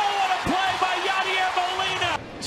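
Ballpark crowd cheering, with one long shouted voice held over the noise as the pickoff out is made.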